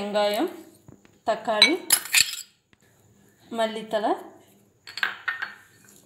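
A spoon and bowl clink against a ceramic plate, sharpest about two seconds in, as chopped shallots are tipped onto raw sardines. Short stretches of a voice speaking Tamil fall in between.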